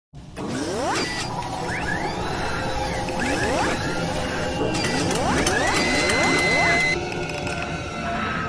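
Synthesized intro sound effects for a mechanical logo animation: rising whooshing sweeps three times over a low rumble, with mechanical clanks and ratchet-like clicks. The sound drops back shortly before the end.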